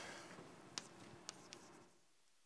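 Chalk writing on a blackboard, faint, with a few sharp ticks as the chalk strikes the board.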